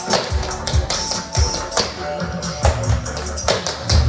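Tap shoes striking a laminate wood floor in quick, irregular metal clicks, several a second, over a hip-hop track with heavy bass.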